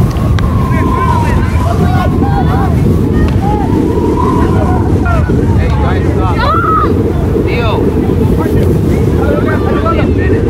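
Heavy wind buffeting on the microphone, a dense low rumble, with many short distant shouts and calls from players and spectators across the field.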